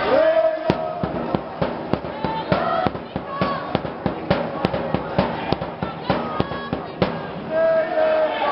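Supporters in an indoor sports hall chanting and shouting, over a run of loud, sharp beats at about two to three a second. A long shouted call rises near the start.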